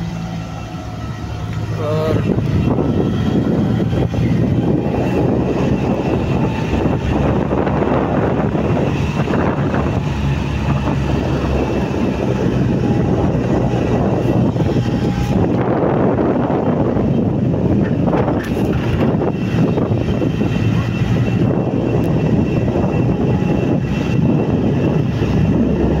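Car engine running with road and wind noise, heard from inside the moving car; the noise grows louder about two seconds in and then holds steady.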